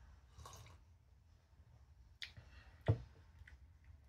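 Faint sipping and swallowing of coffee, then a glass mug set down on a wooden board with one sharp knock about three seconds in.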